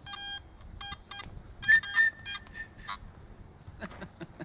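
Metal detector sounding as its search coil is swept over grass: a run of short, buzzy beeps, then a louder, higher tone held for about half a second near the middle. A sharp click comes just before the end.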